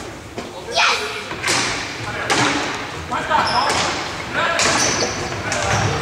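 Indoor hockey sticks striking the ball on a wooden hall floor: several sharp hits about a second apart, each ringing in the reverberant sports hall, with players' voices calling between them.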